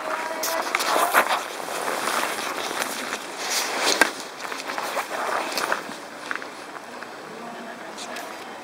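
Footsteps on a gravel path, irregular crunching steps that stop about six seconds in.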